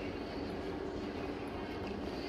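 A steady low mechanical drone with a faint hum in it, even in level and with no knocks or clanks.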